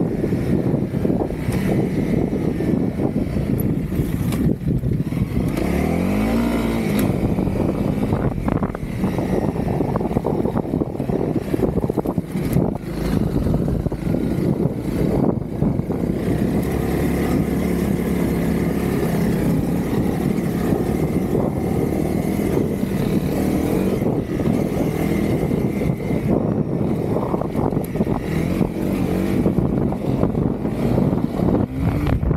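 Honda CRF300L's single-cylinder four-stroke engine running while the bike is ridden. The engine note climbs about six seconds in, as on a rev or gear change, and is otherwise fairly steady.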